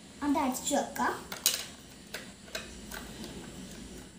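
A few hard plastic clicks and taps from handling the battery cover on the underside of a toy RC car, the sharpest about a second and a half in. A voice is heard briefly in the first second.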